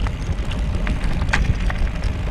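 Mountain bike tyres rolling over a loose gravel track, with a steady low rumble and a few scattered clicks and rattles.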